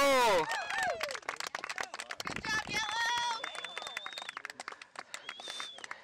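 Spectators shouting encouragement at a children's soccer game, their calls trailing off about a second in. Then come short, high-pitched distant shouts from the field, over scattered light taps and clicks.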